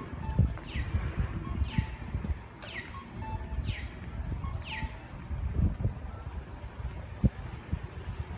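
A bird calling: a descending whistled note repeated about once a second, six times, stopping about five seconds in, over a low rumble with occasional thumps.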